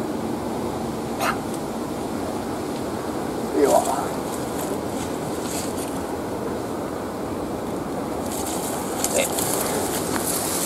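Steady wind-like outdoor noise, with bush foliage rustling as snake tongs work a snake out of the branches and a brief vocal sound about four seconds in.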